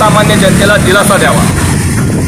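A voice calling out loudly for about the first second, over a steady din of road traffic.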